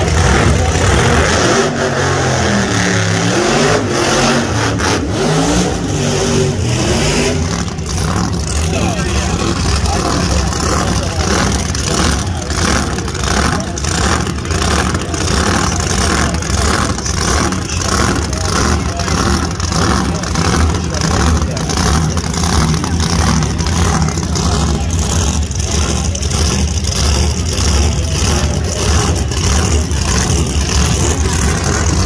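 Supercharged nitromethane-burning nostalgia funny car engines running loud near the starting line. The engine is revved up and down several times in the first few seconds, then settles into a steady, lumpy idle with an even pulse.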